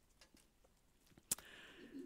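Near silence with quiet room tone, broken by one sharp click a little past halfway, then a faint soft hiss near the end.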